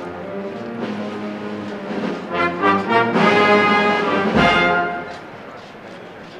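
Brass band playing a processional march, swelling to its loudest in the middle, then dropping back to a quieter passage near the end.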